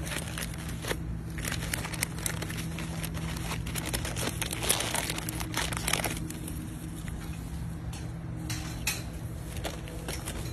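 A beaver crinkling a blue goody bag as it mouths and pulls at it, a dense run of irregular crackles and rustles that is busiest about halfway through.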